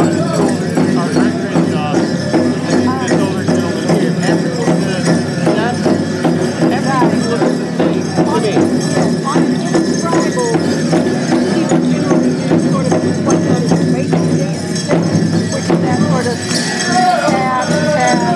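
Powwow drum and singers: a steady drumbeat under group singing, accompanying the dancers.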